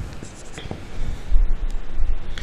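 Marker pen writing on a whiteboard: short scratchy strokes as numerals are written, with a dull low bump partway through.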